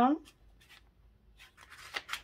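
Hands pressing and smoothing a folded sheet of patterned paper flat, with a brief paper rustle near the end.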